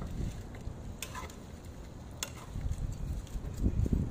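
Metal spoon stirring dried anchovies frying in a nonstick pan, with a few sharp scrapes and clicks of the spoon against the pan about one and two seconds in. A low rumble runs underneath and swells near the end.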